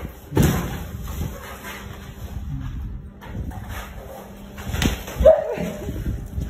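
Sharp slam-like impacts: one hard one about half a second in, then two more near the end, the last the loudest.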